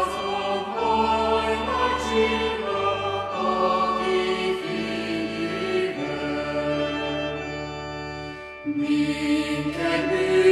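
A choir singing a slow Christmas song in long held notes over sustained low accompaniment, with a brief break between phrases near the end.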